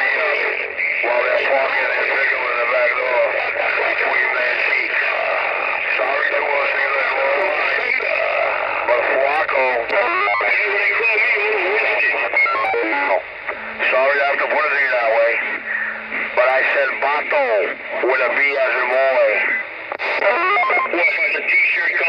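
Channel 19 CB traffic coming through a Magnum S-9 radio's speaker: narrow, distorted voices mixed with music or singing, with a warbling, wavering pitch. There is a brief drop-out a little after the middle.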